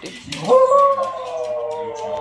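A West Highland white terrier giving one long howling whine that swoops up sharply at the start, then is held and slowly sinks, asking to play ball.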